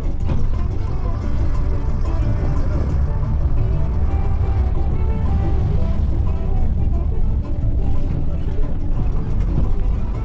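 Steady low rumble of a moving vehicle's engine and tyres, heard from inside the cabin, with music playing over it.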